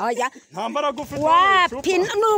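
Speech only: excited voices talking loudly, with a high, drawn-out exclamation in the second half.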